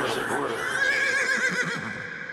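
Horse whinny sample played in the beatless breakdown of a hardstyle track: one wavering, warbling high call that fades out near the end.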